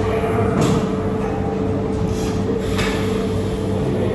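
Steady mechanical hum over a constant rushing background noise, with a couple of faint soft knocks.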